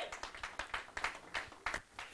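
Congregation clapping: scattered, uneven hand claps that thin out toward the end.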